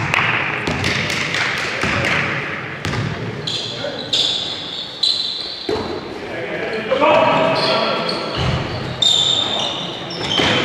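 Basketball game in a large sports hall: a basketball bouncing on the court floor, short high squeaks of trainers on the court at several moments, and players' voices calling out.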